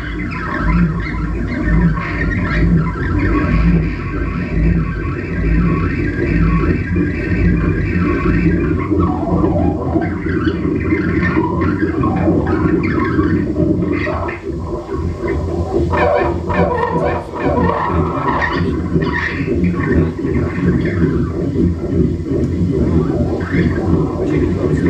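Live experimental electronic noise music: a dense, loud texture with a low throbbing pulse repeating about twice a second for the first third, giving way to irregular short higher-pitched squeals and blips over a steady low drone.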